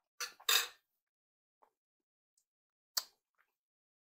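Mouth noises from a man eating a bite of grilled fish: two short breathy puffs or smacks close together about a quarter to half a second in, and another about three seconds in.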